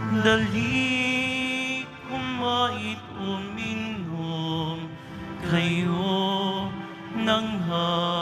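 Slow hymn sung in long held notes with vibrato, moving between pitches every second or two.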